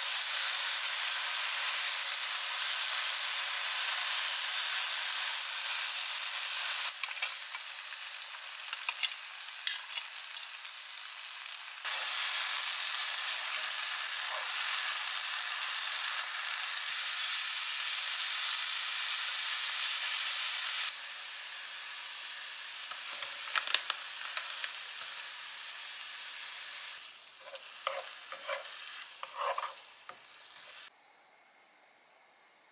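Spinach and mushrooms sizzling steadily as they stir-fry in a nonstick frying pan, their moisture cooking off. Wooden chopsticks click and scrape against the pan now and then as the greens are turned. The sizzle jumps abruptly louder or softer several times.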